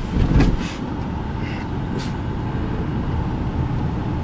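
Wind rushing through an open car window and road noise from the moving car, a steady low rush with a louder gust about half a second in.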